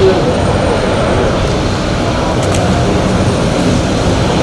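Steady road-traffic noise from vehicles driving slowly past, with indistinct voices in the background.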